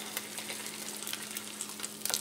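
Eggs frying in butter in a nonstick pan, a soft steady sizzle, with a few faint ticks as a plastic spatula slides under an egg to lift it for the flip.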